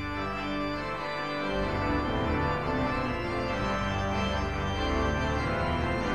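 Pipe organ playing sustained full chords over a deep pedal bass line, which briefly drops out about a second in and then returns.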